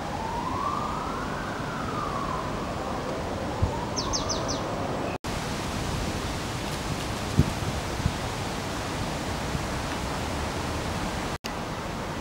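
Emergency-vehicle siren wailing, rising and falling twice over a steady rushing background of outdoor noise. The sound drops out abruptly about five seconds in and again near the end.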